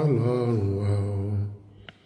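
A man's low voice in a slow, drawn-out chant, holding one long note that fades out about a second and a half in, followed by a short click.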